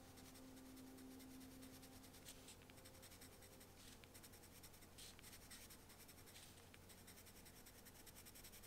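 Faint scratching of a coloured pencil on textured watercolour paper, made as a quick run of short shading strokes.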